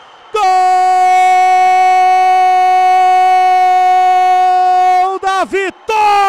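A male TV commentator's long goal shout, 'gooool', held on one steady high pitch for about four and a half seconds, then breaking into a wavering, wobbling pitch near the end.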